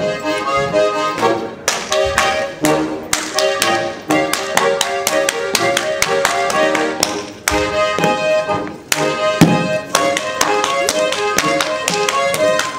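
Accordion-led Bavarian folk dance music, with clusters of sharp slaps from a Schuhplattler dancer striking his thighs and shoe soles in time with the music.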